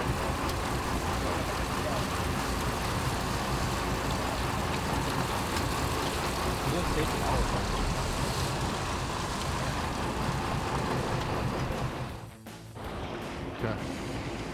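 Sportfishing boat's engine running under way, with wind and wake water rushing past, making a steady noise that drops out briefly near the end.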